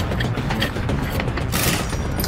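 Metallic clicking and rattling of a threaded hose coupling being turned by hand on the underside of a freight tank car, with a short hiss of noise near the end.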